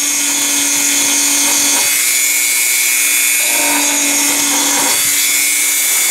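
Dremel rotary tool running at high speed, its bit grinding channels into a wooden plaque. A steady high whine throughout, with a lower hum that comes in twice, for a second or two each time.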